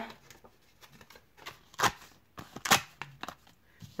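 A strip of scratch cards torn apart along the perforations: a few short, sharp rips and snaps, the two loudest about a second apart in the middle.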